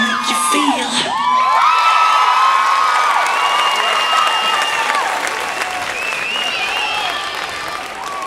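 A dance track ends within the first second, and an audience breaks into cheering, high whoops and applause, which slowly fade.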